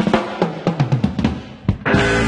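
Drum kit playing a short break in a blues-soul recording: a run of snare and bass drum hits with the rest of the band dropped out, then the full band comes back in just before the end.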